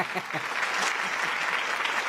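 An audience applauding, a steady mass of clapping, with a voice briefly heard over it at the start.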